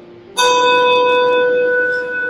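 A brass handbell rung once, starting about half a second in, its clear tone ringing on and slowly fading. It is a memorial bell, sounded after each name of the dead is read.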